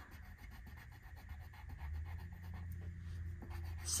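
Colored pencil rubbing back and forth on paper as a small picture is colored in: a faint, rapid scratching. A low steady hum runs underneath, stronger through the middle.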